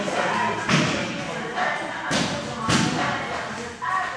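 Basketball bouncing on a wooden indoor court floor: a few hard thumps at irregular intervals during play.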